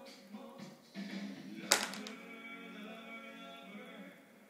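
Music playing on a television in the room, with one sharp tap just before the halfway point as a toddler's fork hits the high-chair tray.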